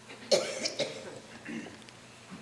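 A person coughing: two sharp coughs about half a second apart, then a softer one about a second and a half in.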